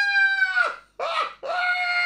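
A high-pitched, squealing laugh drawn out into two long held squeals, each falling off at the end, with a short breath between them.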